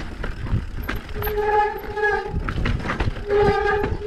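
Downhill mountain bike rattling and clattering over a rocky trail. A steady high-pitched whine from the bike sounds twice, each time for about a second: once starting about a second in, and again near the end.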